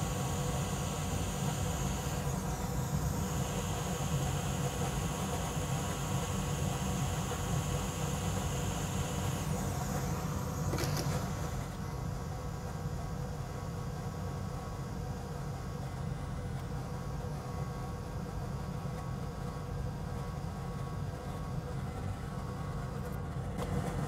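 Steady electric fan noise from a fume extractor running close to the soldering work, with a higher hiss on top that stops about halfway through.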